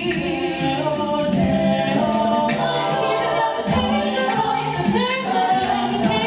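Co-ed a cappella group singing live without instruments, a female soloist at the microphone over the group's layered backing harmonies.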